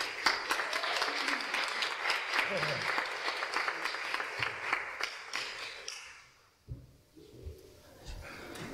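Congregation applauding, a dense patter of hand claps that fades away about six seconds in. A short low thump follows near the end.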